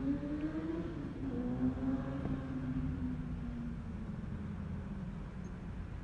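A passing motor vehicle's engine heard from inside a car. Its pitch rises as it accelerates, drops about a second in at a gear change, then holds and slowly falls away over a low rumble.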